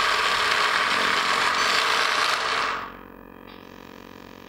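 Traxxas Stampede 4x4's brushless electric motor and gear drivetrain running in reverse, a steady mechanical whir that cuts off about three seconds in.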